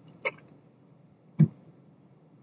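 Two brief, sudden sounds against quiet room tone, the second, about a second and a half in, the louder.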